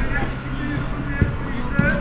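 Faint, distant shouting voices over a steady low hum.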